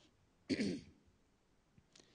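A man clearing his throat once, briefly, about half a second in, heard through a microphone.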